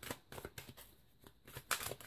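Tarot deck being shuffled by hand: faint papery riffling and flicking of cards, in short bursts near the start and again near the end, with a quieter stretch in between.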